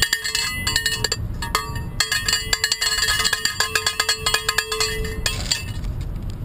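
Handheld cowbell struck over and over in a quick, uneven rhythm, each hit ringing briefly. The hits are sparse at first, come thick and fast from about two seconds in, and stop shortly before the end.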